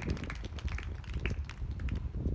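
Wind rumbling on the microphone, with scattered light taps and clicks of footsteps on the hard court.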